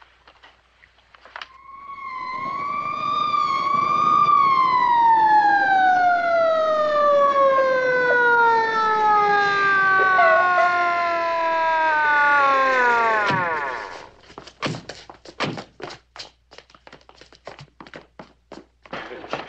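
A police car siren wails briefly, then winds down in pitch over about nine seconds and dies away, followed by a few scattered knocks and thuds.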